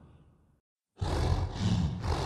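Werewolf heavy-breathing sound effect: one breath fades away into a brief silence, then about a second in a loud, low, rough breath starts abruptly and pulses on in waves.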